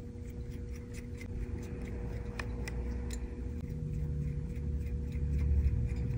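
Faint, scattered small clicks and ticks of a precision screwdriver turning in an iPhone's tiny bottom screws beside the charging port, over a steady low hum.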